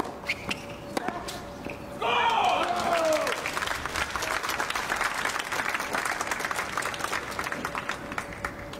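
A tennis ball is struck and bounces a few times. About two seconds in comes a loud shout, and spectators clap for several seconds as the point ends.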